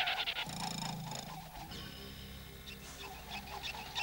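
Faint cartoon sound effects: a brief low rumble about half a second in, then a thin steady ringing made of several high tones from about two seconds in.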